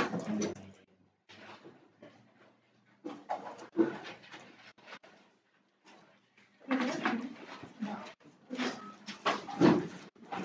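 Marker pen squeaking and rubbing on a whiteboard in short, irregular strokes of handwriting, with brief pauses between words.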